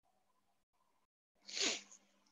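A single short, breathy vocal noise from the man, like a sharp breath through the nose, about one and a half seconds in. A faint steady electrical hum sits underneath.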